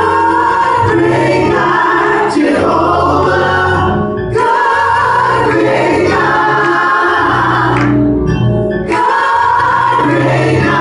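Church praise team of three women and a man singing a gospel song in harmony into handheld microphones, over sustained low accompaniment notes. The singing pauses briefly between phrases about four and eight seconds in.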